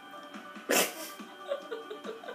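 A person lets out one sudden, loud burst of breath through the nose and mouth about three-quarters of a second in, over steady background music.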